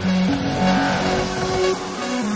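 Melodic techno from a DJ mix at a point where the heavy kick and bass drop out, leaving a synth line of short notes stepping up and down over a wash of noise.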